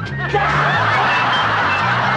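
Music with a stepping bass line, joined about a third of a second in by a studio audience laughing.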